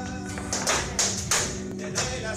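Flamenco music with guitar, punctuated by loud, sharp percussive hits at a quick, even rhythm about three a second.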